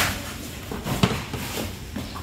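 Dried smoked fish being handled in a plastic basin: a few sharp knocks and dry rustles as the stiff pieces are lifted and bump against each other and the basin. The sharpest knock comes at the start and another about a second in.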